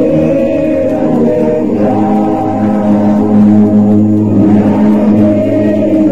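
A choir or congregation singing a slow hymn in long held chords that change every second or two.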